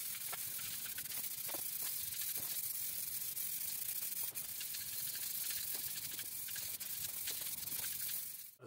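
Aerosol spray paint can spraying a first coat onto a motorcycle fuel tank: a steady hiss, held without a break, with faint small ticks in it.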